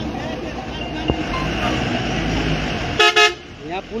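Vehicle horn giving a brief loud blast about three seconds in, over a steady low rumble of heavy trucks' engines idling and moving in a queue on a dirt road.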